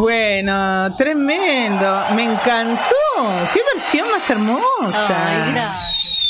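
Women's voices at a studio microphone: a drawn-out vocal note in the first second, then voice that rises and falls like talk, which the speech recogniser did not catch as words. Near the end a thin high whistle-like tone falls in pitch.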